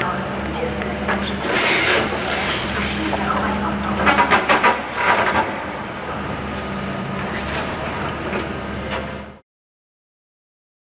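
Demolition excavator's diesel engine running steadily while its crusher breaks up the building, with crunching and clattering of falling concrete and debris and a rapid run of loud knocks about four seconds in. The sound cuts off suddenly near the end.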